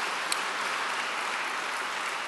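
Audience applauding, a steady wash of clapping from many hands.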